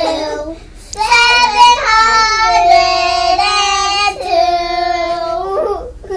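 A child singing long, drawn-out notes held at a steady pitch. There is a short break about a second in and another at about four seconds.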